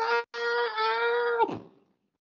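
A man's long, high-pitched drawn-out wail of "nooo", held on one pitch and dropping off at about a second and a half: a mock-anguished protest.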